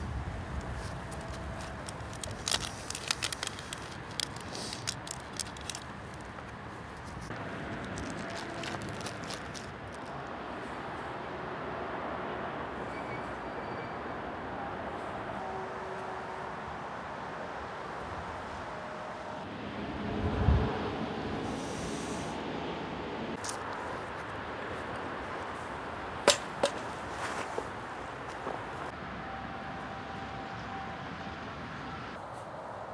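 Steady wind noise, with a run of small metallic clicks in the first few seconds from fishing tackle and pliers being handled while a steel leader is made up. A low thud comes about twenty seconds in and a sharp click near the end.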